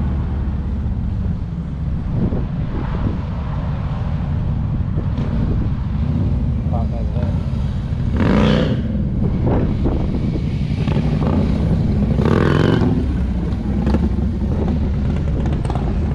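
Motorcycle engines rumbling as two motorcycles ride slowly in at low revs, louder as they come close about eight and twelve seconds in.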